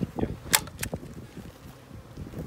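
Two sharp clicks about a third of a second apart, among soft knocks, from a metal-and-screen queen cage handled with gloved hands on a wooden board.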